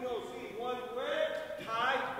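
Indistinct voices talking in a gymnasium: speech that no words could be taken from.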